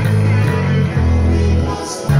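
Rock music carried by a Rickenbacker electric bass playing held low notes that change about every half second, with sung vocals over it. The level dips briefly near the end.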